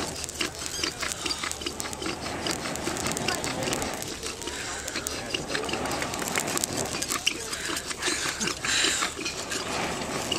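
A person blowing long breaths into a smouldering moss tinder bundle to coax the ember into flame, with a stronger rush of breath about eight and a half seconds in. People talk in the background.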